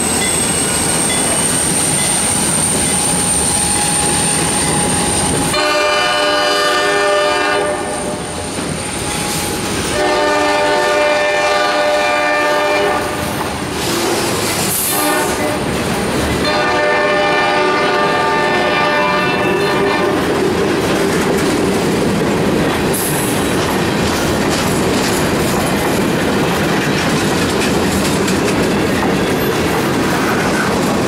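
Freight train rolling past close by: a steady rumble and clickety-clack of wheels on the rails, with a thin high wheel squeal in the first few seconds. The locomotive's horn sounds three blasts, each about three seconds long, a few seconds apart.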